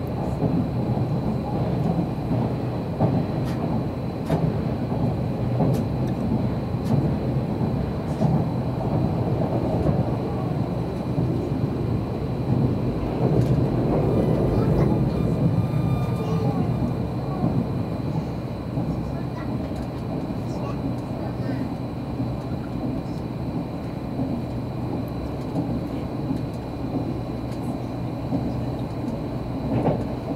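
Odakyu limited express train running at speed, heard from inside the passenger cabin: a steady rumble of wheels on rail with occasional light clicks, swelling louder about halfway through.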